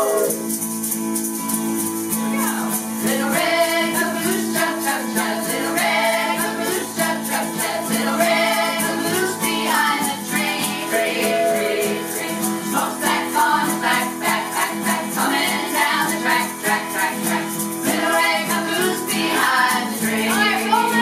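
Egg shakers shaken in a steady rhythm over acoustic guitar strumming, with a group of voices singing a children's song.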